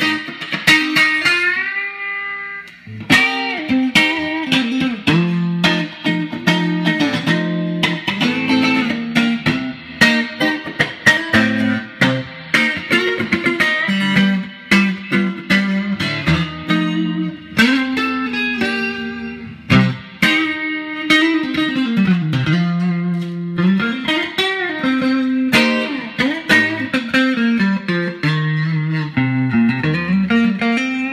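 A 1965 Fender Stratocaster electric guitar played through an amplifier: a run of picked single notes and chords, some notes bending up and down in pitch, with a brief pause about two to three seconds in.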